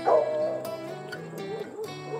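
A dog barks once right at the start, the call falling in pitch and trailing off, over background music.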